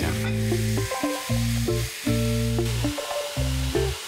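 Cubed raw chicken sizzling in hot oil in a frying pan with mushrooms and onions, stirred with a wooden spatula. Background music with held chords that change every second or so plays over it.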